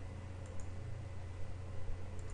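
A few soft computer clicks, a mouse or similar being operated, over a steady low electrical hum.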